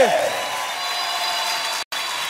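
A singer's last note slides down and ends at the very start, followed by applause and crowd noise with a faint held note underneath. The sound cuts out completely for an instant near the end, at a track change.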